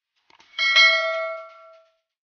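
A few faint clicks, then a single bell-like ding that rings out and fades over about a second. This is the notification-bell sound effect of a YouTube subscribe-button animation.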